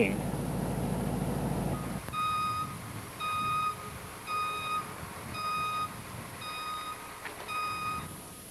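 A dump truck's backup alarm beeps six times, about once a second, as the truck reverses out of a garage door. A low steady rumble comes first and stops about two seconds in.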